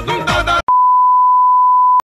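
Music with a pulsing beat cuts off suddenly about half a second in, and after a brief gap a loud, steady test tone at one pitch begins and holds: the reference tone that goes with colour bars.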